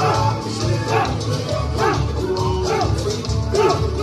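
Dance music playing loudly, with a heavy pulsing bass beat and short rising-and-falling vocal sounds over it.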